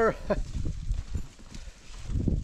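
Sheep hooves and footsteps on a dirt trail, an irregular patter of soft low thuds with some rustling, quieter toward the end.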